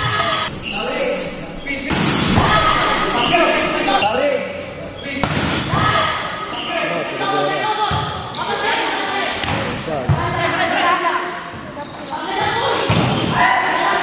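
Indoor volleyball rally in an echoing gym: players and onlookers shouting and calling, with several sharp smacks of hands striking the ball.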